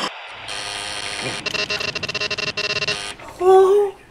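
A hiss with a steady high electronic tone and fast, even ticking, then near the end a short, loud, flat buzz from a door intercom buzzer.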